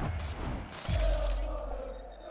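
Intro sound effect: a sudden deep boom with a glassy shattering crash about a second in, the low rumble then trailing off.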